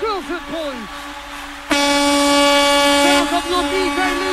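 Club DJ mix over a held synth note, with an MC's effected voice gliding in the first second. From a little under two seconds in, an air-horn sound effect sounds for about a second and a half, and then the MC's voice goes on.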